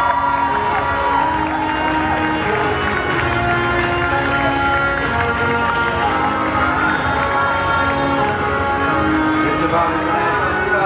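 Crowd cheering over loud music with long held notes.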